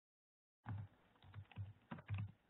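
Typing on a computer keyboard: a run of separate keystrokes starting about two-thirds of a second in, after a dead-silent start.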